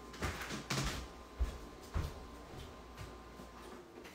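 A countertop ice machine that is running with a steady hum and thin whine while struggling. There are several knocks and clunks as it is handled, and the hum and whine cut off near the end as it is switched off.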